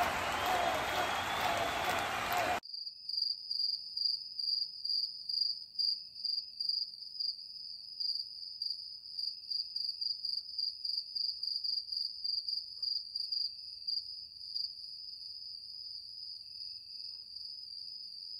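A dense, applause-like noise cuts off abruptly about two and a half seconds in. It gives way to crickets chirping: a steady high trill that pulses about twice a second.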